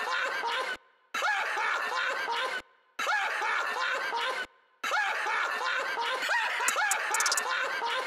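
Chopped laughing vocal sample in an instrumental rap beat, with the bass and drums dropped out: the laughter plays in short stretches that cut off abruptly into brief silences three times, and a quick roll of rapid ticks comes near the end.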